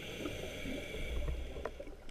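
Scuba regulator hissing with a steady, whistle-like tone as the diver breathes in, lasting nearly two seconds, heard underwater through the camera housing. Faint crackling clicks from the reef sound throughout.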